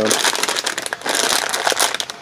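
Plastic packaging bags crinkling and rustling as they are handled and folded, in an irregular crackle.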